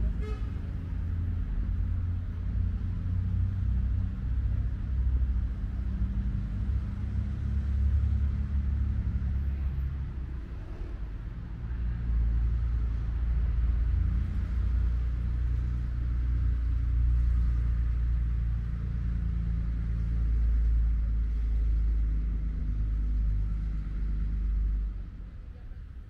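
A steady low rumble that eases off about ten seconds in, comes back, then drops away about a second before the end.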